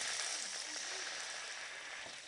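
Red wine sizzling as it is poured into a hot frying pan to deglaze it, a steady hiss that slowly dies down.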